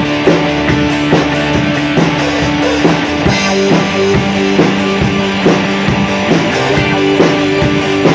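Rock band playing an instrumental passage: electric guitars, bass guitar and drum kit, with sustained chords over a steady beat of about two to three drum hits a second.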